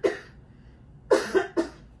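A woman coughing: one cough right at the start, then a run of three quick coughs about a second in.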